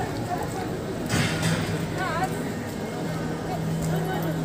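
Street ambience of passersby talking in a busy pedestrian area, with a short burst of noise about a second in and a low steady hum starting at the same moment.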